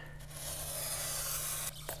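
A line being marked along the edge of a scrap of foam board onto an extruded-polystyrene foam insulation sheet: a steady scratchy rub lasting about a second and a half, followed by a light tap near the end.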